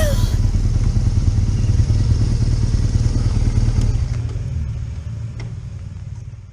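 BMW R1200GS boxer-twin motorcycle engine running as the bike rolls along at low speed, a steady low rumble heard from the rider's helmet camera. It fades out over the last two seconds.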